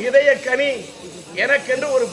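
A man crying out in grief, a tearful lament in a high, strained voice that swells and falls in short wailing phrases.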